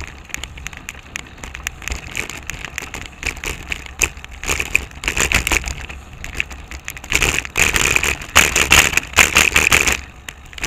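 Bicycle and its mounted camera rattling and clicking as the bike rolls along an asphalt street, the clatter growing louder in stretches about five seconds in and again from about seven seconds on.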